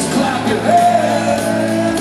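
Live rock band with a male lead singer, playing in a large arena hall; a long held note comes in a little under a second in and holds to the end.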